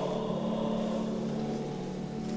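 Sacred choral music holding one long, steady low chord between sung phrases.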